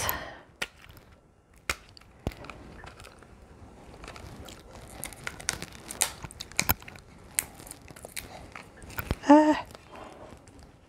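A small wrapped cosmetics box being unwrapped and handled by hand: crinkling and tearing of its wrapping with scattered sharp clicks and ticks. A brief hummed vocal sound near the end.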